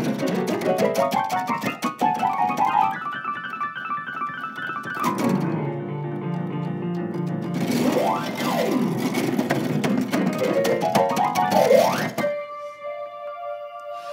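Electronic keyboard played as a piano solo: quick runs of notes and sweeping glissandi up and down the keys. It ends on held notes about twelve seconds in.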